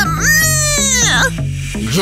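A girl's drawn-out crying wail in a tantrum, lasting about a second and falling off at the end, over background music.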